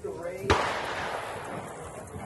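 A single gunshot about half a second in, sharp and sudden, its echo dying away over about a second.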